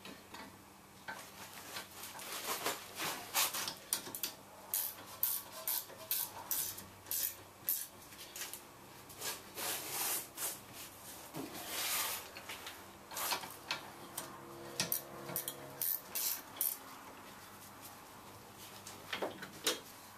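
Hand tools clinking and scraping on a car's rear brake caliper as the caliper and its guide pin bolts are refitted: irregular metallic clicks and knocks.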